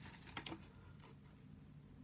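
Faint handling of a fabric aircrew survival vest being lifted and turned: a few soft clicks and rustles about half a second in, otherwise near silence.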